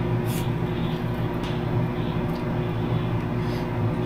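Steady low hum of a running appliance, with a faint click near the start.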